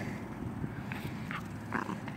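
Small dog snuffling with its nose down at the ground, close to the microphone, with a few short soft sounds about a second in.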